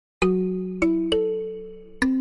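Intro jingle of bell-like chime notes: three notes struck in quick succession, each ringing on and slowly fading under the next.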